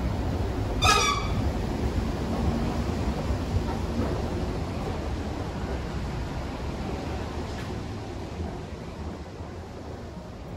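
Low, steady rumble of a running escalator, fading as the walker moves off it into an underground concourse, with one short high squeak about a second in.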